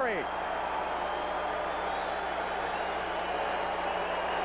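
Steady crowd noise from a packed basketball arena, an even din of many voices with no single sound standing out.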